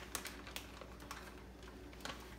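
Shredded cheese shaken out of a plastic bag and dropping onto stuffed bell peppers. A few faint light ticks come in the first half second, then a soft, low rustle.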